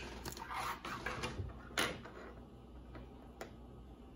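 Sleeved trading cards being handled and set into small clear plastic display stands. A rustle of plastic, then a sharp click just before halfway, and a fainter click later.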